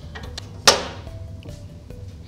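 Quiet background music with one sharp knock about two-thirds of a second in, ringing briefly, and a few light clicks before it, from hardware on a thickness planer's outfeed table.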